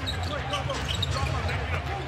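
Basketball being dribbled on a hardwood arena court over a steady low crowd hum, with faint voices in the crowd.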